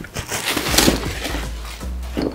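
Clear plastic packaging bag crinkling and rustling in irregular bursts as a duffel bag is pulled out of it.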